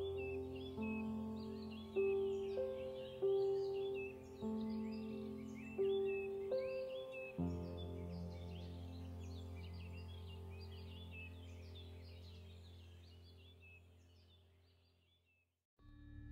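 Calm instrumental background music: gentle sustained notes struck about once a second over a low steady drone, with birdsong chirping high above, the whole track slowly fading out and ending just before the close.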